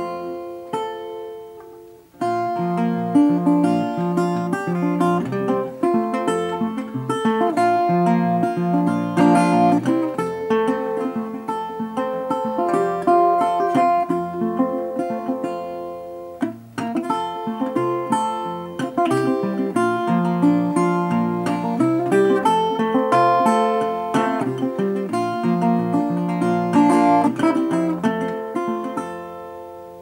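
National Style-O metal-bodied resonator guitar fingerpicked: a run of ringing, bright plucked notes over lower bass notes. The playing pauses briefly about two seconds in, then goes on.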